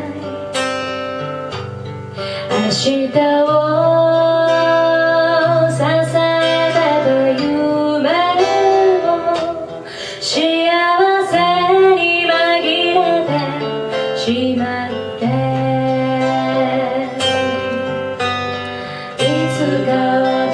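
A woman singing a song live into a handheld microphone, backed by a small band with guitar prominent, over steady bass notes.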